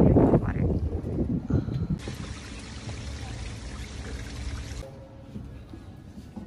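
Running water, pouring or trickling: a steady rushing hiss that starts abruptly about two seconds in and cuts off just before the end, lasting about three seconds.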